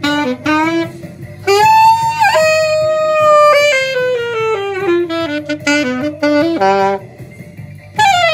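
Saxophone playing a melody: a few short notes, then a long held high note that drops to a lower held note sliding slowly downward, then a run of shorter notes stepping down, with a brief pause near the end.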